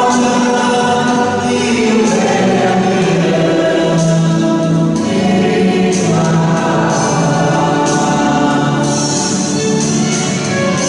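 A group of voices singing a church hymn together in long, held notes.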